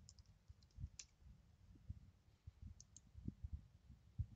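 Faint computer keyboard keystrokes and mouse clicks: a few scattered light ticks, one about a second in and two close together near three seconds, over soft low thuds.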